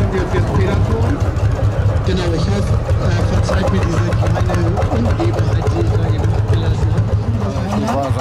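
Lanz Bulldog tractor's single-cylinder two-stroke engine running steadily at low speed, a low, even pulsing beat.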